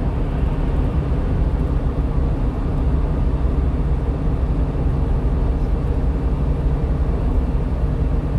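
Steady low drone of engine and tyre noise heard from inside a vehicle's cab while it cruises at highway speed.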